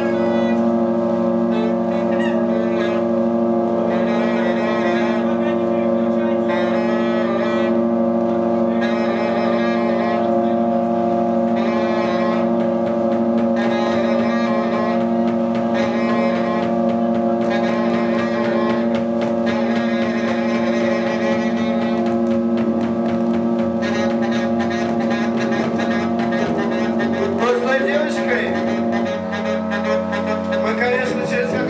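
Live experimental band music: a steady held drone chord with a wavering higher line over it. The drone stops shortly before the end.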